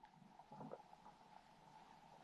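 Near silence, with only a faint, brief sound about half a second in.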